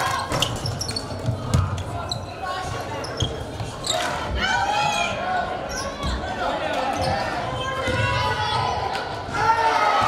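A basketball dribbling and bouncing on a hardwood gym floor, with repeated thuds, and players' and spectators' voices echoing in the gym.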